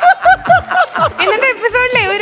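Studio laughter: a high-pitched laugh in short repeated 'ha-ha' pulses, about four a second, giving way to a voice speaking near the end.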